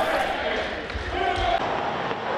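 Match sound from a stadium with largely empty stands: voices calling and shouting across the pitch, with two dull thuds about a second in.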